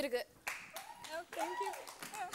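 A studio audience applauding, starting about half a second in, with voices calling out over the clapping.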